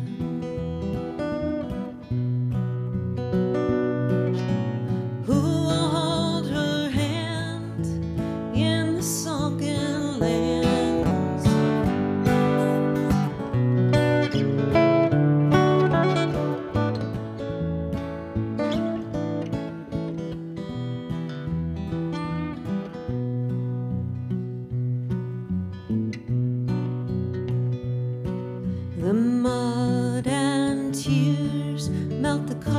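Two acoustic guitars played together in a slow country-folk song, picked and strummed.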